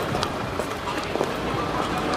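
Busy outdoor street ambience: an even murmur of crowd voices with scattered short clicks and knocks.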